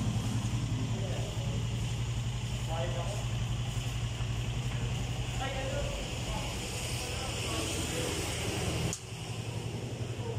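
Rusi RFi 175 scooter engine idling steadily with an even, low pulse, dipping briefly near the end.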